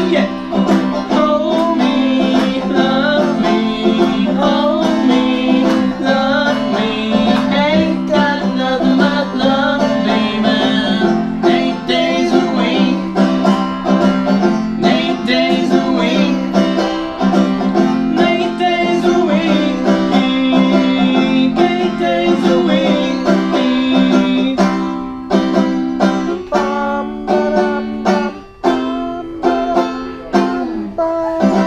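A man singing while picking a five-string banjo, performed live. The voice stops about six seconds before the end, leaving the banjo playing on its own.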